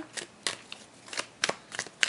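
Tarot deck being shuffled by hand: a quick, irregular run of sharp card snaps and flicks.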